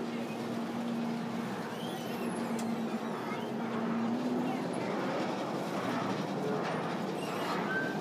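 Mine-ride train rolling along its track through a dark tunnel: a steady rumbling noise, with a low steady hum that stops about halfway through.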